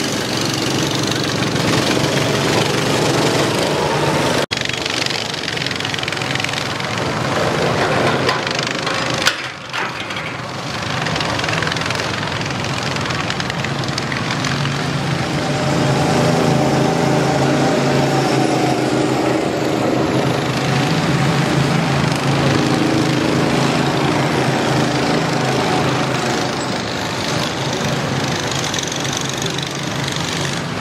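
Go-kart engines running on the track, a steady drone whose pitch shifts up and down as the karts speed up and slow down.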